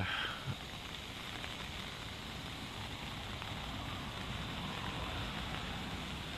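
Steady rain and wind noise, an even hiss that does not let up.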